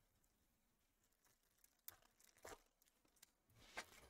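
Near silence, broken by a few faint ticks and rustles of foil trading cards being shuffled in the hands: about two seconds in, again half a second later, and once more near the end.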